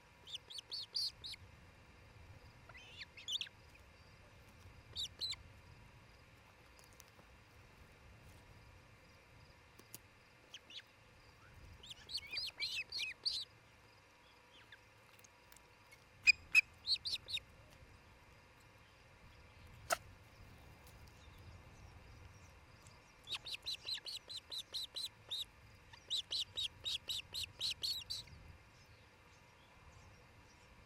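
Ospreys at the nest giving short, high whistled chirps in several bursts, ending in two long rapid runs of about five calls a second. A single sharp click sounds about two-thirds of the way through.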